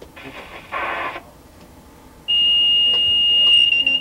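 A steady, high-pitched electronic warning tone in the X2000 locomotive cab, one unbroken beep starting about halfway through and lasting nearly two seconds before cutting off sharply.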